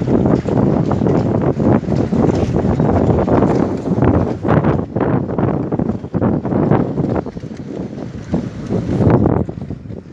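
Wind buffeting the phone's microphone outdoors: loud, irregular gusts of rumbling noise that rise and fall throughout.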